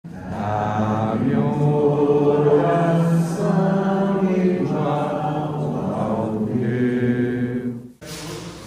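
Chant-like singing with long held notes over the opening title card, cut off abruptly just before the end.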